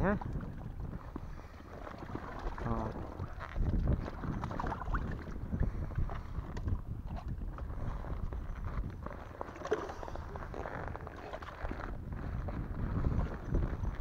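Vinyl inflatable baby float being squeezed and handled to push its air out through the valve: irregular crinkling and rubbing of the plastic.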